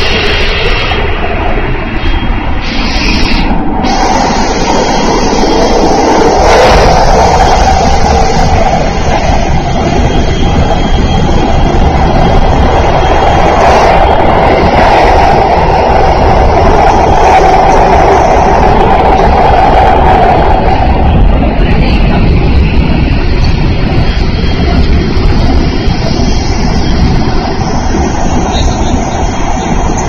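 Running noise of a Thunderbird limited express train heard from inside a passenger car: a loud, steady rush and rumble of wheels and air that swells about four seconds in and eases off again after about twenty seconds.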